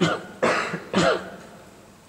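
A man coughing and clearing his throat in three short bursts about half a second apart.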